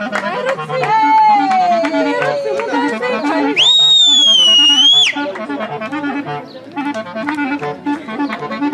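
Live band music in a Romani wedding style: a clarinet lead over a steady, repeating bass and chord rhythm, with a long downward slide early on and a loud, high held note lasting about a second and a half near the middle.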